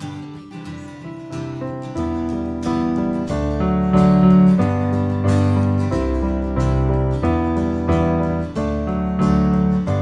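Acoustic guitar strumming chords as the instrumental intro of a worship song, building in loudness, with deep low notes joining about two seconds in and growing fuller around six seconds.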